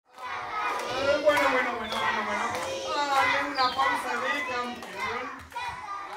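A crowd of children chattering and calling out together, many voices overlapping at once.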